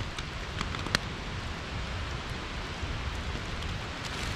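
Steady rain with rainwater running over a cobblestone gutter, an even hiss, with one sharp tick about a second in.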